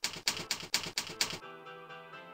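Rapid typewriter-style key clicks, about six a second, stopping about a second and a half in, after which music with held notes comes in.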